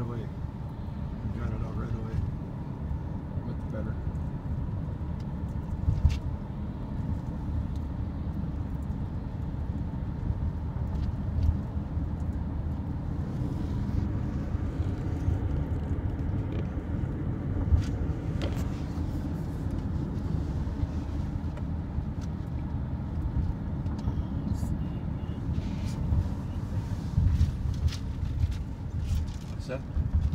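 Steady low rumble of a car driving, heard from inside the cabin, with three brief knocks spread through it.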